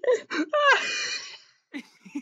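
A man laughing hard: a few quick breathy bursts, then one long, breathy, high-pitched laugh that rises in pitch and fades out about a second and a half in.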